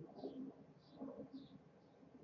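Faint bird calls: a few short calls repeating about every half second.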